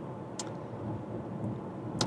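Car cabin road noise while driving: a steady low hum of tyres and engine, with a faint click about half a second in.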